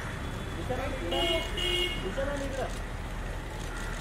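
Two short toots of a vehicle horn, each about a third of a second long and close together, over a low traffic rumble.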